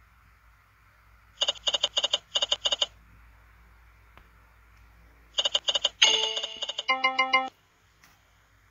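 Online video slot game sound effects: quick runs of bright chiming clicks in two bursts early on and again about five seconds in, then a short tinkling jingle of stepped notes for about a second and a half, marking a small line win.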